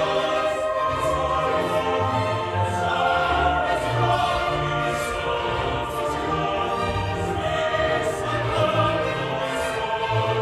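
Symphony orchestra playing with a choir singing over it, in a sustained, dramatic passage with a pulsing beat underneath.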